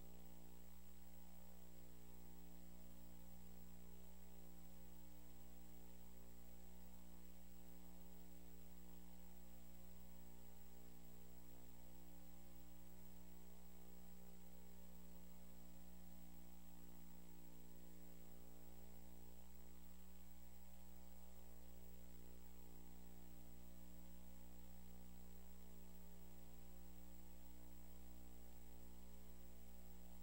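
Steady electrical mains hum with a faint thin high whine above it, unchanging throughout.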